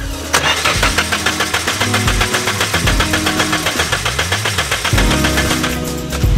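Nissan 240SX engine turning over on its starter, which is wired directly to jump it, in an attempt at the car's first start: a steady, even rhythm that begins about a third of a second in. Background music plays along with it.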